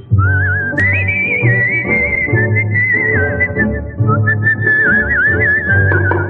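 Instrumental prelude of a 1961 Tamil film song: a whistled melody, sliding up at the start and then trilling and wavering, over an orchestral accompaniment with a repeating bass line.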